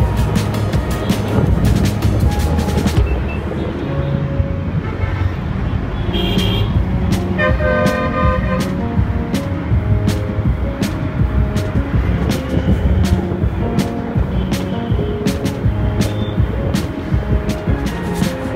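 Background music with a steady beat laid over motorcycle and city traffic noise, with a vehicle horn sounding for about a second near the middle.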